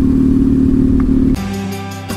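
Triumph Thruxton parallel-twin engine running steadily under way, cut off abruptly about a second and a half in, when guitar music starts.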